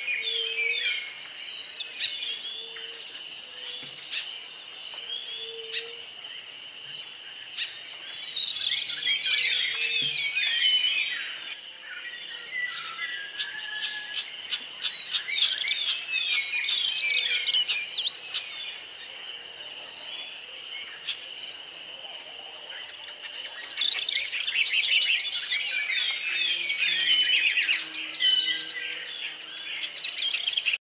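Birds chirping and singing in quick, busy flurries, thickest in three spells across the stretch, over a steady high-pitched drone.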